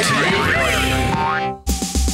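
Short cartoon jingle for a TV show's logo ident, with springy boing sound effects sliding up and down in pitch. It cuts off about one and a half seconds in, and new music with a heavy bass starts.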